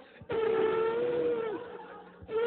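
One elephant trumpet call, held for over a second and dropping slightly in pitch as it tails off.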